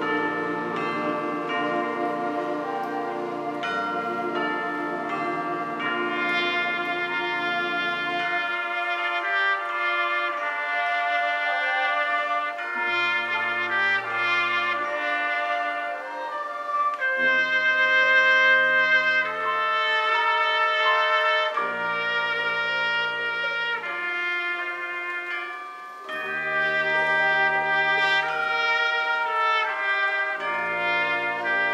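High school concert band playing, with trumpets and other brass to the fore over held chords. The low bass notes drop out about a third of the way in, then come back as separate held notes.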